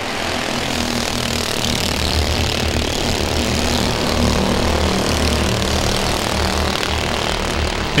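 Race cars' engines running at speed on a short oval track, a steady, unbroken engine sound with no clear single pass-by.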